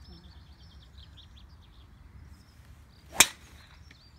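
A driver striking a teed golf ball: one sharp crack about three seconds in, the loudest sound, with birds chirping faintly in the first second and a half.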